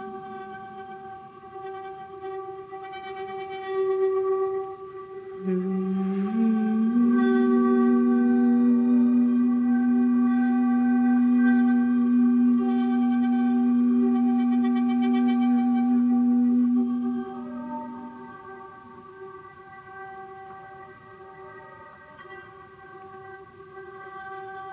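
Slow Dhrupad-style music for male voice and bowed double bass, ringing in a stone church. A steady pitched drone runs throughout. About six seconds in, a low note slides up in small steps and is held loud for about ten seconds, then falls away, leaving the quieter drone.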